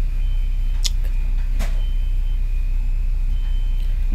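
Steady low hum with a faint high whine, broken by two short clicks of a tint brush against a plastic mixing bowl of hair bleach, about a second and a second and a half in.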